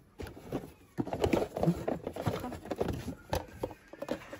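Handling noise from a plastic vegetable slicer and its cardboard box as the slicer is lifted out: irregular knocks, clatters and rubbing of hard plastic against cardboard, starting about a second in.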